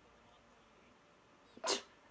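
Faint room hiss, then near the end a single short, sharp breathy vocal sound from a woman, such as a quick laugh, gasp or sniff, just before she speaks.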